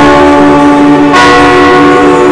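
Loud church music: an electronic keyboard holding sustained chords with a bell-like tone, moving to a new chord about a second in.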